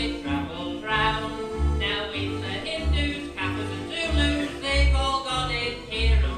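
Instrumental break in a music-hall comedy song played by a live band: a bass line of low notes, about two a second, under a melody line.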